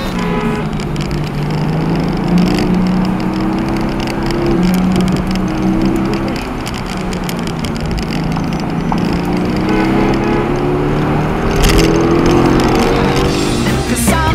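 Car engine running under load with road noise, its pitch climbing and dropping as the car accelerates and slows through the bends.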